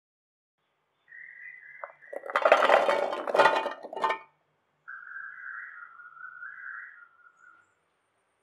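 Peeled shallots clattering into a stainless-steel mixer-grinder jar and the steel lid clinking on, the loudest stretch, over about two seconds. Then, after a short pause, a small mixer-grinder motor whines for a few seconds as it grinds the shallots to a coarse paste.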